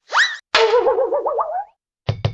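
Cartoon sound effects: a quick rising swoosh, then a springy boing whose pitch wobbles rapidly up and down for about a second, for an animated basketball bouncing off a backboard.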